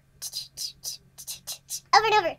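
A young woman making a string of short whispered, hissing mouth noises with no voice behind them, imitating the empty sound of a phone line on hold with no music.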